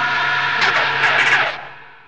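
Film trailer soundtrack: a held chord of steady tones under a rushing, whooshing sound effect that surges about half a second and a second in, then fades away over the last half second.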